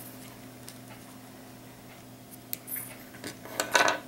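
Small embroidery scissors snipping through a length of six-strand cotton floss, heard as a few light, sharp clicks in the second half, over a steady low hum.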